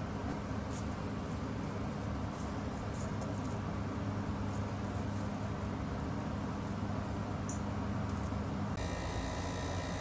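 Light rustling of dry barley stalks as a bundle is handled and tied with thread, over a steady low background hum. The background changes abruptly near the end.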